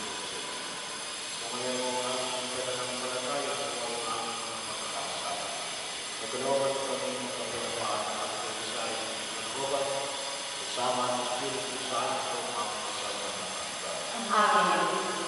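Voices singing a hymn in long, held phrases with short breaks between them, over a steady background hiss.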